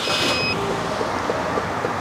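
2008 Chevy Cobalt engine running steadily just after being restarted, with a short high beep in the first half-second.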